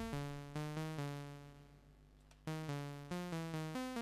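Eurorack modular synthesizer playing a quantized, semi-random sequence of short enveloped notes, about four a second, stepping up and down in pitch as mixed LFOs drive a quantizer and the quantizer's trigger fires an ADSR into a VCA. About a second in, one note rings on and fades; after a faint click the sequence starts again about two and a half seconds in.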